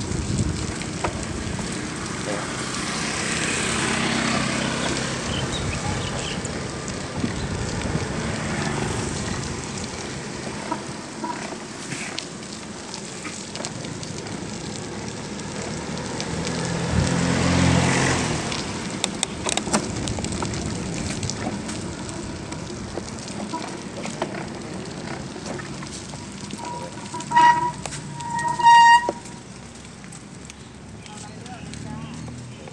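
Wind rushing on the microphone and street traffic heard from a moving bicycle. A motor vehicle passes loudly about 17 seconds in, and two short horn toots come near the end.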